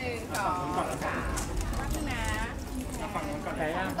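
People talking, with a scattering of sharp clicks typical of press photographers' camera shutters.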